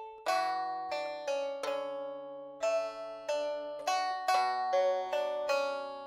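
Sampled pipa (Chinese plucked lute) from a Kontakt library, played from a keyboard: a slow line of about a dozen plucked notes and two-note chords, each ringing and dying away. The player finds the tone narrow in its EQ and lacking a stereo field.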